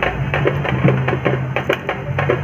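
Loud festival music: drums struck in a quick, uneven rhythm over a steady low hum.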